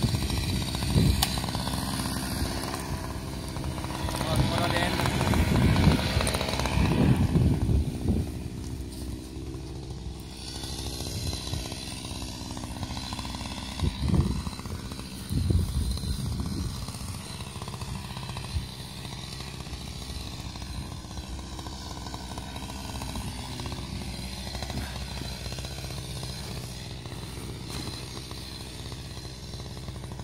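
Chainsaw engine idling steadily, with indistinct voices over it in the first several seconds.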